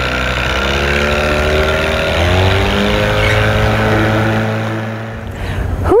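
A 9.8 hp outboard motor on an inflatable dinghy, running under way. Its pitch rises over the first few seconds as it speeds up, then holds steady and fades near the end.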